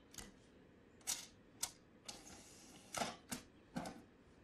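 Faint, irregular sharp clicks and taps, about seven over four seconds, with a short scratchy hiss in the middle.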